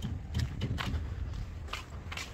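Footsteps on concrete at a walking pace, about five steps a little under half a second apart, over a low steady rumble.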